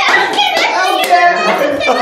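A group of young women laughing and talking excitedly, with a few sharp hand claps mixed in.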